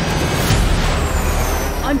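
Jet aircraft flying past: a loud rushing roar with a thin whine that slowly falls in pitch, and a sharp thump about half a second in.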